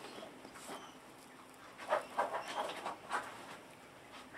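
A hedgehog snorting close to the microphone: a quick run of short huffs about halfway in, then another just after. Snorting like this is taken as a healthy sign.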